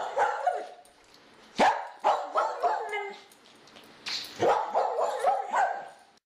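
A dog barking several times in short groups: a sharp bark about a second and a half in, a few more just after two seconds, and a longer run of barks from about four seconds in.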